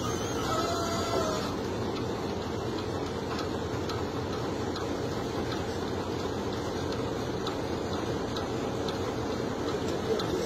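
Engine of the heavy machine whose bucket hangs over the hole, running steadily with an even low rumble.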